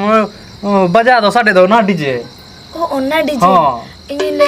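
A steady high insect chirring, typical of crickets at night, runs on beneath voices talking loudly; the voices stop twice for a moment.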